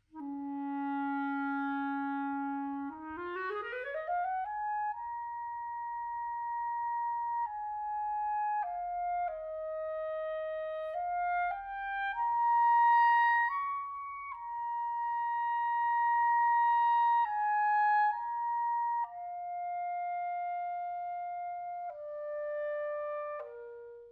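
Solo Buffet Crampon RC Prestige clarinet with a Vandoren mouthpiece and reed, playing a phrase unaccompanied. A low note is held for about three seconds, then a fast run climbs into the upper register, followed by a slow melody of held notes that stops just before the end.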